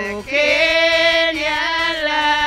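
Several women singing a hymn into microphones. After a short break about a quarter second in, they hold one long sung note.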